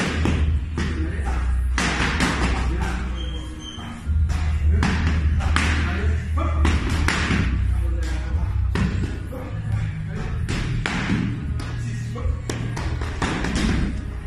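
Boxing gloves striking focus mitts in a string of sharp, irregularly spaced smacks, over background music with a heavy, steady bass.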